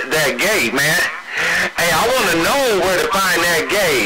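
Voices coming over a CB radio, garbled and unintelligible, over steady radio hiss, with a short break in the talk about a second in.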